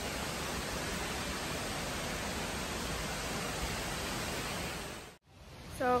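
Steady rushing of a waterfall close by, an even hiss with no pitch to it, cut off abruptly about five seconds in.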